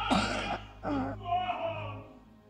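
Two loud coughs close to the microphone, about a second apart, as a held operatic note stops; faint singing carries on underneath.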